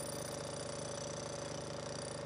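An engine running steadily at idle, a low, even hum with no change.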